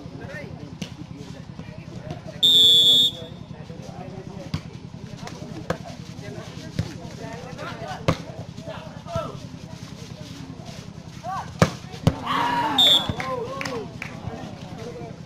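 A referee's whistle sounds once about two and a half seconds in, followed by a volleyball rally: the ball is struck with sharp smacks every second or so. Near the end, two hard hits are followed by spectators shouting and a second short whistle blast.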